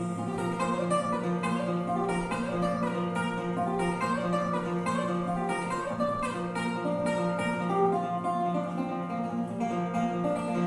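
Instrumental break played on acoustic guitar: quick picked notes over a steady low held note, with harp and cello in the accompaniment.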